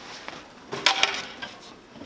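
A short clatter of knocks about a second in: a duffel bag set down on a metal-framed chair and the chair next to it knocking as someone sits on it.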